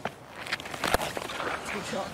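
Cricket bat striking the ball once, a sharp crack about a second in, over faint background voices.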